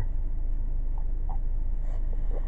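Steady low background rumble in a pause between speech, with two faint short sounds about a second in.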